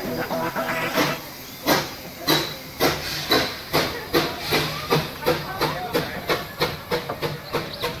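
Puffing Billy narrow-gauge steam locomotive pulling away: a hiss of steam, then regular exhaust chuffs that quicken steadily as the engine gathers speed.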